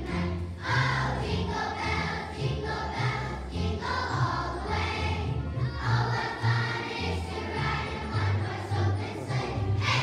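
A choir of young children singing together over instrumental accompaniment with a low bass line, the singing going on without a break.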